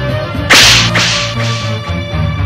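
A sudden loud dramatic sound effect about half a second in, sharp at the start and fading over about a second with two weaker repeats, laid over background music with steady low notes.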